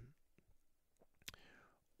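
Near silence in a pause between a man's spoken phrases. There are a few faint mouth clicks, and a slightly louder click a little past halfway is followed by a soft breath.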